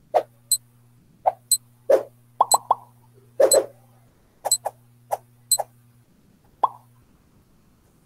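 Countdown timer's sound effects: a short high tick about once a second mixed with short low pops, over a steady low hum, all stopping about seven seconds in.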